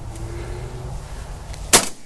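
A single shotgun shot near the end, sharp and loud, over a low steady rumble.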